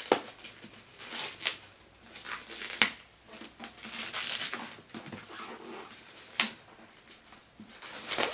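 A paperback book being handled: rustling pages and a few sharp taps and clicks of the cover. About four seconds in there is a longer breathy rustle as the book is held up to the face to be sniffed.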